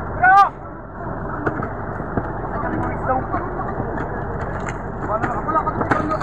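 A fishing boat's engine running steadily under a loud, short shout about a third of a second in, with a few brief knocks and voices scattered through the rest.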